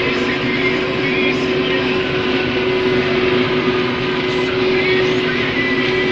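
Case IH 1620 Axial-Flow combine harvesting corn, heard from inside the cab: a loud, steady drone of the engine and threshing machinery with a constant hum, the machine running under load.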